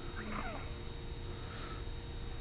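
A pause in speech: quiet room tone with a steady faint hum, and a faint brief sound within the first second.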